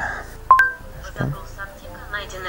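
Smartphone voice-search chime: a short two-note electronic tone, a lower note followed by a higher one, about half a second in. It is the Google app's signal that it has stopped listening and is recognising the spoken question.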